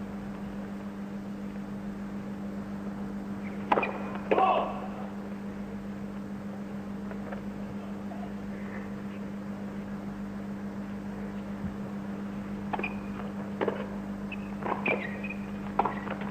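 Steady low hum on the broadcast audio. A point gets under way in the last few seconds, with several short sharp pops of a tennis ball being struck on a serve, return and volley. Two louder sharp sounds come about four seconds in.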